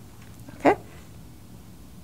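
A single short spoken "okay?" rising in pitch, otherwise quiet room tone.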